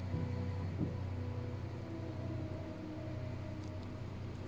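Soft background music of long held notes, the notes changing every second or so. Near the end comes a faint rustle of paper as a hand moves onto the Bible page.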